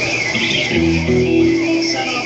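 A guitar chord with low bass notes, struck about three-quarters of a second in and ringing for under a second, played by a live band.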